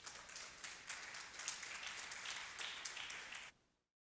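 Applause: many hands clapping irregularly, separate claps standing out, cut off suddenly near the end.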